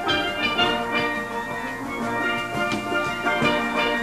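A steel orchestra playing: many steelpans struck with sticks, ringing with quick, overlapping notes.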